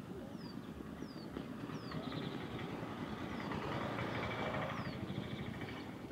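Birds calling with short falling chirps and brief trills, over a steady low rumble of outdoor and road noise; a vehicle passes on the road, loudest about four seconds in.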